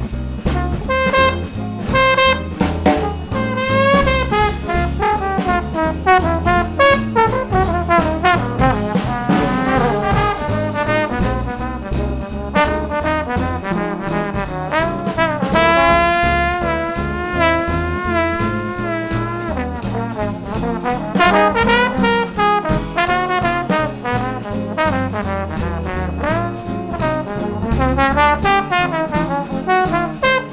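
Small-group swing jazz, with a trombone playing the melody over a walking bass and drums keeping time on cymbals. Around the middle the horn holds long notes with a wide vibrato.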